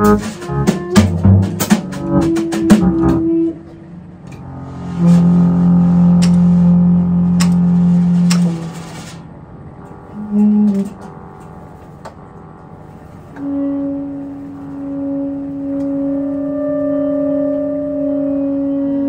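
Free-improvised jazz from a tenor saxophone, guitar and drum kit trio. A dense flurry of drum and cymbal strikes in the first few seconds thins out into sparse, long-held low notes. From about two-thirds of the way in, one steady sustained tone carries on to the end.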